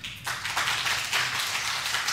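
Audience applauding, the clapping starting a moment in and keeping up steadily.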